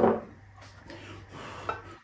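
Faint handling sounds of fingers working food on a plate, with a small click near the end.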